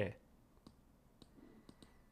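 A few faint, sharp clicks, scattered and irregular over about a second and a half, over low room tone.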